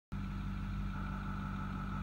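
Vehicle engine running, heard from inside the cabin as a steady low hum.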